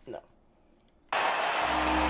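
Audio from an autoplaying online video starting up: a loud, even rush of noise with a low hum beneath it comes in about a second in and cuts off suddenly as the playback is stopped.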